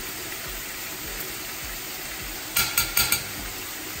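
Chorizo, onion and ginger frying in a hot pan, a steady sizzle. About two and a half seconds in comes a quick run of four sharp clicks.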